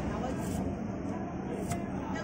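Knife slicing a red onion on a wooden chopping block, the blade tapping sharply against the wood a couple of times, over a steady background hum.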